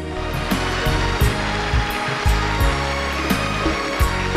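Large audience applauding, a dense even clatter of clapping, with background music with a steady beat playing over it.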